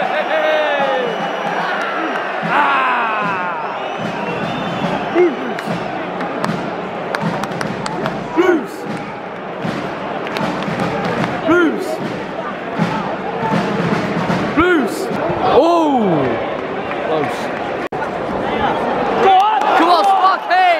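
Football crowd in a stadium stand: many voices chanting together near the start, then steady crowd noise with single fans shouting and a few sharp knocks.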